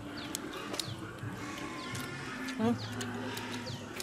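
Small birds chirping again and again, short downward-sliding chirps, over a steady low hum.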